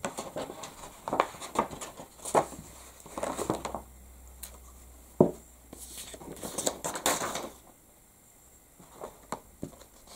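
A stiff inked craft sheet handled on a tabletop: irregular rustles, crinkles and light taps as it is lifted, flexed and laid back down, with one sharp tap about five seconds in.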